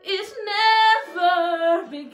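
A woman singing a musical-theatre ballad, holding two notes with vibrato, the second lower than the first.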